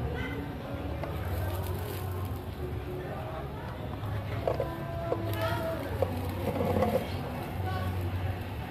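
Faint background voices and some distant music over a steady low hum.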